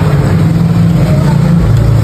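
A motor vehicle's engine running steadily with a low rumble; its pitch drops slightly near the end.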